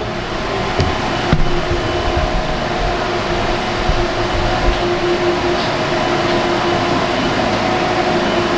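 Loud, steady whirring hum of cooling fans and ventilation, with a steady mid-pitched tone running through it. A few faint knocks come in the first second and a half.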